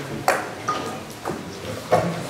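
Footsteps on a hard floor: four sharp steps roughly half a second apart. A short ringing ping comes after the second step, and faint voices murmur underneath.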